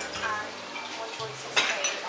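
Metal knife and fork clinking against a dinner plate, with one sharp clink near the end.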